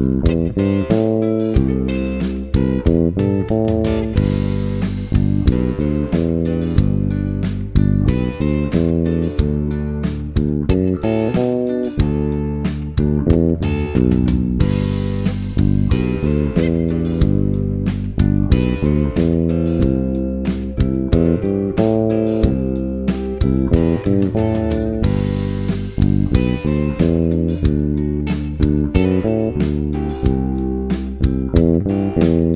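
Electric bass guitar played fingerstyle, repeating the same steady one-bar groove over G, C and D7 chord changes with even, consistent note attacks.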